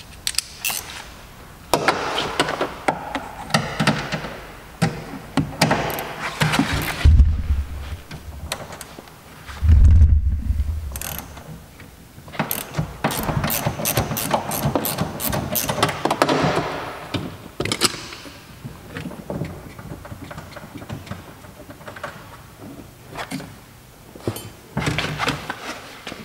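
Ratchet wrench clicking in quick runs while the side mirror's mounting screw is undone, with scraping and handling noise. Two heavy low thumps stand out, the louder about ten seconds in.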